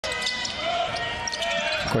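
A basketball being dribbled on a hardwood court amid the steady noise of an arena crowd.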